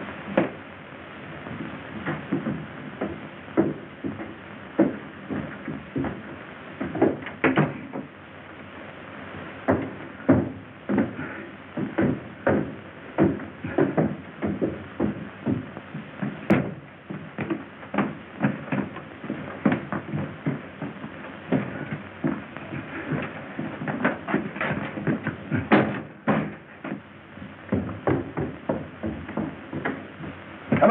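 A long run of irregular knocks and thumps, several a second, with louder single knocks now and then, on an old band-limited film sound track.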